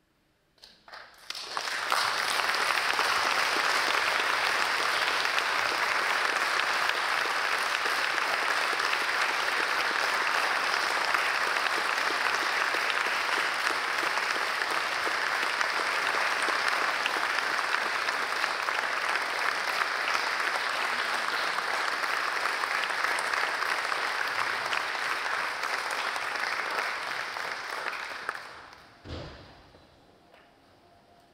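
Audience applauding in an auditorium. The clapping starts about a second in, holds steady for most of the time, and dies away a couple of seconds before the end.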